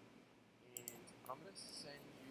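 Faint clicks at a computer: a quick cluster of clicks about three-quarters of a second in and a few more near the end, over near-silent room tone.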